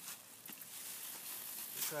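A bag rustling as it is pulled down over a pot of cuttings, with a small click about half a second in.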